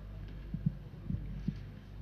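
A steady low hum with four soft, dull thumps near the middle, consistent with handling knocks on a handheld microphone.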